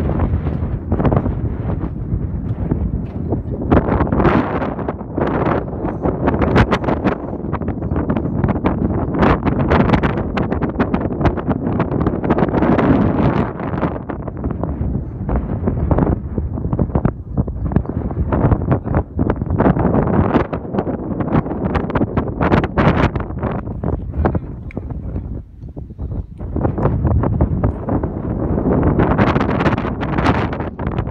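Wind buffeting the microphone in gusts, a loud low rumble that swells and eases with crackling thumps, with a brief lull near the end.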